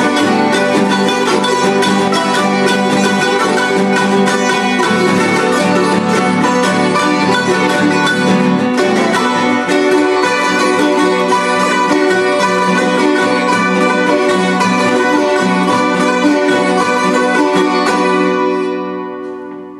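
A small ensemble of plucked string instruments, guitars and small Andean lutes, playing an Ecuadorian san juanito together at a steady, even level.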